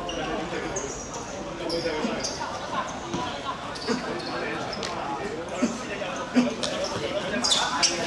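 A football being kicked on artificial turf: several sharp thuds in the second half, the loudest a little past the middle, among players' shouts and calls.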